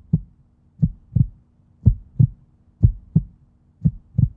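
Heartbeat sound effect: low paired lub-dub thumps, about one pair a second, over a faint steady hum.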